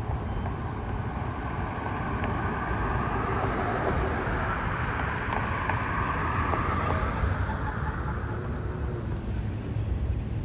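A car driving slowly past at close range in a parking lot. The engine and tyre noise swells for a few seconds in the middle and then eases off, over a steady low rumble.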